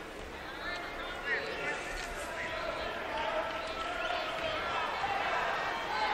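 Arena crowd murmur: many spectators talking at once, a steady, fairly quiet hubbub during a stop in play at the free-throw line.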